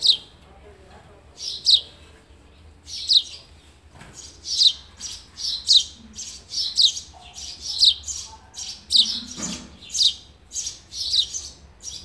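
Sparrow nestlings calling from the nest: short, high chirps, each falling in pitch. They repeat about every second and a half at first, then come faster, often in pairs about once a second.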